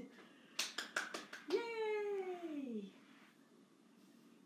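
About five quick, sharp hand claps within a second, then a woman's voice calling out one long note that leaps up and slides down in pitch.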